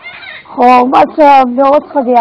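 An elderly woman's voice speaking Pashto, loud, with long held syllables after a brief pause at the start.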